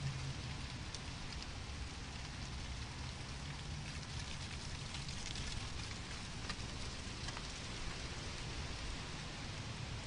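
A steady hiss with scattered light ticks and patter, like rain or rustling leaves.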